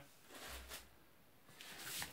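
Faint rustling of plastic bubble wrap being handled, in two short spells: about half a second in and again near the end.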